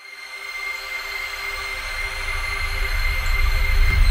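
Logo-reveal sound effect for an animated channel intro: a whooshing swell over a deep rumble that builds steadily and is loudest near the end, with a thin steady high tone on top.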